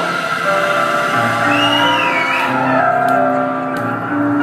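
A live synth-rock band plays sustained synthesizer chords over a bass line, with no vocals at this point in the song. About halfway through, a brief high note glides up and back down.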